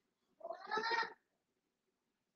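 A short, high vocal cry that rises in pitch, lasting under a second.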